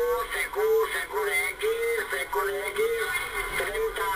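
A voice received on single-sideband through an HR-2510 transceiver's speaker, thin and narrow-sounding, with the clipped tone of radio speech. It is a station calling CQ.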